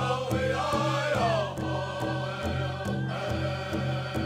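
Powwow drum group: several men singing vocables in unison over a large shared drum struck in a steady beat, the voices sliding down in a falling phrase about a second in.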